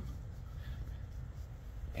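Faint steady outdoor background noise through a phone microphone: a low rumble with a light hiss.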